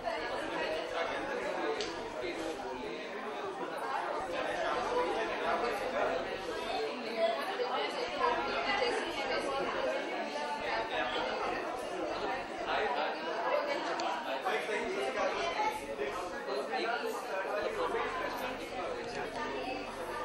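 A man talking continuously, with chatter from other people in the background.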